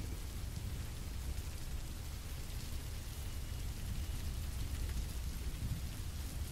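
Quiet, steady rain ambience with a low rumble underneath, unchanging throughout.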